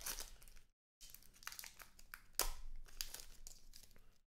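Crinkling and rustling of foil card-pack wrappers and plastic as trading cards are handled, with scattered small crackles and clicks. It drops out to silence briefly just under a second in.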